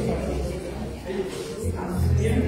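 Indistinct voices talking in a room, over a steady low hum that grows louder near the end.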